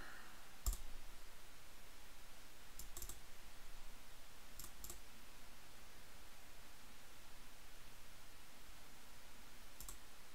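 Computer mouse clicks, faint: a single click, then two quick double-clicks about two seconds apart, over a low steady hiss.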